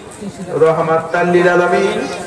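A man preaching a Bengali waz into a microphone in a drawn-out, chanting delivery: after a short lull at the start, his voice comes in with long held notes.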